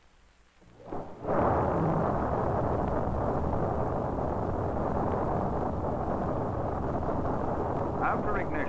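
Ignition of a Saturn I rocket's eight booster engines: after near silence the sound swells about a second in, then jumps to a loud, steady rocket-engine roar.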